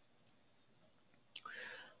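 Near silence, then a faint short breath drawn in about a second and a half in, just before the man speaks again.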